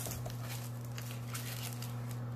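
Faint rustling and light handling sounds as small items are lifted out of a box lined with shredded crinkle paper, over a steady low hum.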